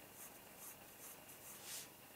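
Faint scratching of a pencil on paper, a few short strokes, as a curved line is drawn.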